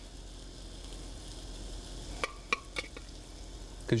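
Quiet, steady sizzle of food frying in a hot pan. About halfway through come a few light clicks of a metal spoon against the stainless pot and the steel ring mold as risotto is scooped.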